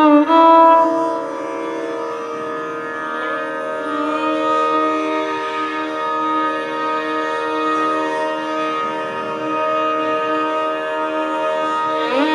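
Carnatic violins playing a slow, unaccompanied passage: a rising glide into a loud held note, then long sustained notes with slight waverings in pitch over a steady drone.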